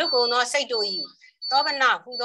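A person talking, with a thin, steady high-pitched tone running along under the voice.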